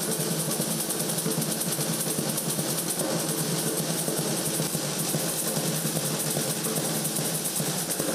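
Batucada drum ensemble playing together: snare drums (caixas) and large surdo bass drums struck with wooden sticks in a fast, dense, unbroken rhythm.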